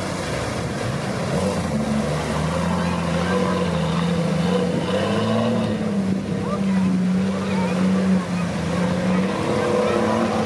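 Jeep Wrangler engine running under load off-road, its pitch rising and falling as it drives.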